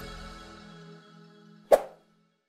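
Outro music fading out with sustained tones, then a single short, sharp click sound effect near the end, as the animated cursor clicks the Subscribe button.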